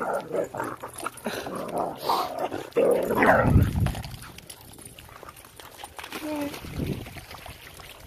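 Dogs barking and whimpering as they play, with a short high whine about six seconds in.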